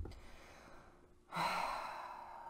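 A person's long breathy sigh starting about a second in and trailing off slowly.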